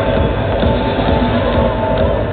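Loud electronic techno music from a big arena sound system, with a steady kick-drum beat about twice a second, recorded muffled and distorted by a camera microphone inside the crowd.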